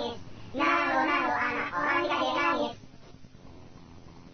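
A child singer's voice singing a short phrase with little accompaniment, stopping almost three seconds in. After it comes a quiet gap in the recording, like the end of a song.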